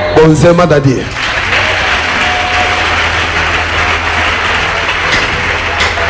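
Church congregation applauding for about five seconds, starting right after a short shout from the preacher, over a steady low hum.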